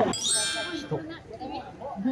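A bright chiming ding: a quick cluster of high, bell-like notes that rings for under a second and fades, followed by faint talk.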